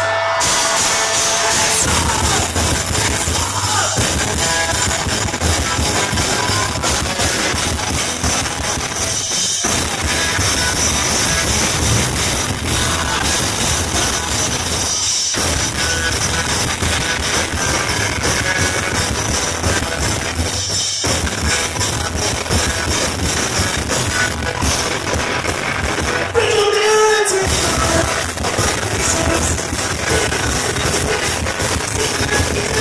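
Pop-punk band playing live, loud and dense: electric guitars, bass guitar and drum kit, broken by a few very short stops. A sung voice rises over the band near the end.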